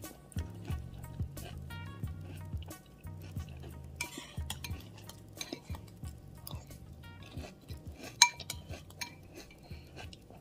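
Spoon clinking and scraping against a cereal bowl in irregular sharp clicks while scooping up Rice Krispies in milk, with one louder clink near the end.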